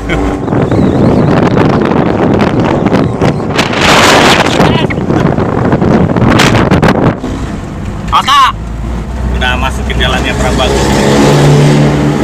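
Moving vehicle's engine with loud wind and road rush, heard from inside the cab while driving fast along a narrow road. The rush eases about seven seconds in, leaving a lower, steadier engine hum.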